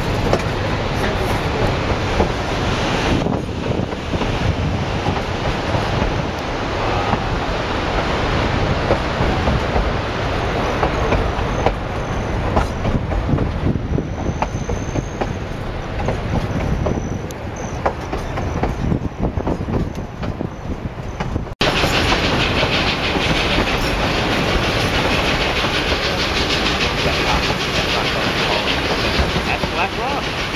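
Narrow-gauge train heard from aboard, with the steady rumble and clatter of its wheels on the rails. About two-thirds of the way through, the sound cuts suddenly to a brighter, steadier rush.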